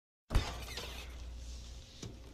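Refrigerator door pulled open: a sudden thud with a glassy rattle from the bottles and jars in the door shelves, then a low hum that fades out near the end.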